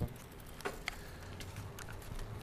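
A bicycle being ridden on a paved road: a few light, irregular ticks and clicks over a low steady rumble of tyre and wind noise.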